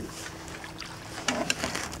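Quiet, steady background aboard a fishing boat at sea, with a faint low hum. A few light clicks and a brief sound come about one and a half seconds in.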